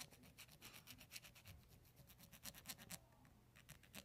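Faint rasping of a small needle file worked in quick short strokes, several a second, inside the aluminium exhaust port of a Predator 212 cylinder head. It is rounding off the sharp lip under the port in a mild port job. The strokes thin out in the last second.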